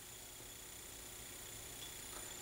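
Faint steady hiss of room tone and recording noise, with no distinct event.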